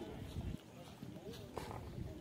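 Faint distant voices over low outdoor background noise.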